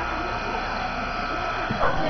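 Background chatter of spectators in a reverberant indoor arena, with a faint steady high tone through the middle and a thump near the end.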